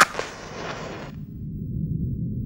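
A sudden loud hit sound effect with a hissing tail that stops abruptly about a second later. It gives way to a steady low ambient drone.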